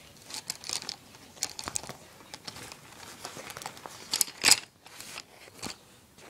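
Clear plastic pencil pouch crinkling and pencils clicking against each other as they are handled, in a string of short rustles and clicks with a louder burst about four and a half seconds in.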